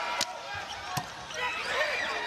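A volleyball jump serve is struck with a sharp smack, and about three quarters of a second later a second smack follows as the ball is passed. Short, high squeaks of sneakers on the court floor follow in the last part.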